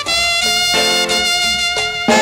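Instrumental music from a worship band, loud, with no singing: a melody of held notes, about two a second, over a bass line, in a brass-like tone.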